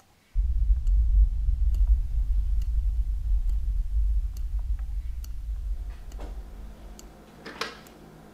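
A deep low rumble that comes in suddenly and slowly fades away, a horror-film drone effect, over a clock ticking about once a second.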